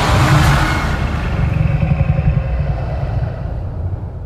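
Film-trailer sound design of a churning whirlpool sea: a loud deep rumble with a rushing wash of water noise, dying down gradually over a few seconds.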